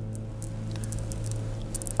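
A pause with no speech: a steady low hum underneath, with a few faint, light clicks scattered through it.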